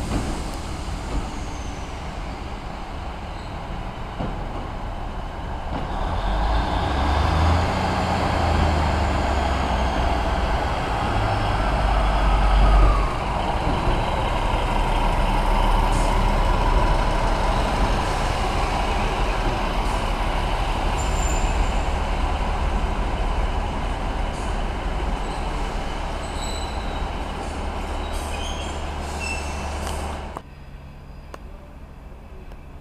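Class 153 single-car diesel railcar's Cummins engine running as the unit rolls past along the platform, growing louder to a peak about halfway through as it passes close, then easing slightly.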